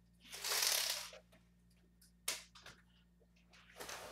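A window with horizontal blinds being opened by hand: a scraping rustle about a second long near the start, then a sharp click and a few light ticks, and another short rustle near the end.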